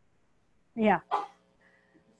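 A person's voice saying 'yeah' about a second in: two short, loud voiced bursts close together.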